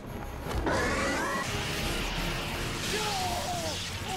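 Cartoon demon beast's animal cry: a rising, pitched call about half a second in, then a falling call near the end.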